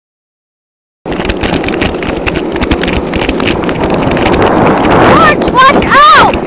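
Silence for about the first second, then a loud, steady, rough rolling noise from a cart's wheels on asphalt mixed with wind across the microphone. Near the end come a few high yells that rise and fall.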